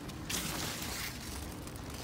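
Rustling of large zucchini leaves being brushed and pushed aside close to the microphone, with a few brief crackles early on over a steady outdoor hiss.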